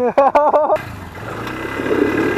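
Loud laughter for under a second, then a Polaris ATV engine running steadily as the quad is worked over rocks.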